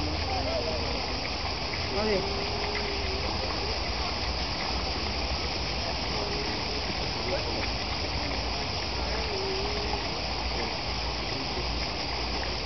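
Steady rush of running water in a turtle pond, with a few short spoken words over it.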